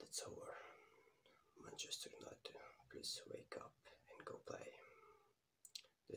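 A man whispering quietly close to the microphone, with sharp hissed consonants.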